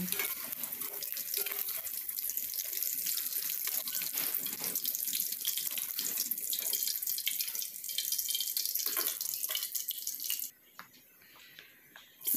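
Hot cooking oil in a wok sizzling and crackling steadily as fried tempe cubes are scooped out with a metal slotted skimmer. The sizzle stops abruptly about ten and a half seconds in.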